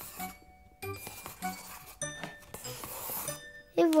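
Light cartoon music of separate tinkling, bell-like plinked notes, mixed with short scratchy scribble sounds as a pencil draws circles on paper.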